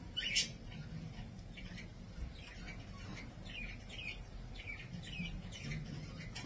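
Faint chirping of small birds in the background, a scattering of short calls over a low room hum.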